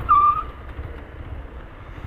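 A Yamaha Fazer 250 motorcycle engine running low as the bike slows to a stop. Just after the start comes a short, steady, high-pitched squeal lasting about half a second.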